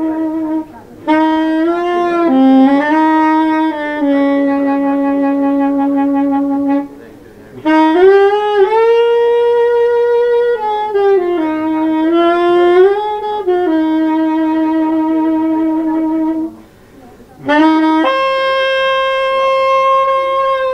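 Solo soprano saxophone playing a free improvisation in long held notes that bend and slide in pitch. The phrases are broken by three short pauses for breath, and the line climbs to its highest about halfway through before falling back.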